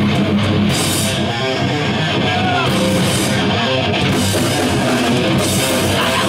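Hardcore band playing live: distorted electric guitars over a drum kit, loud and steady.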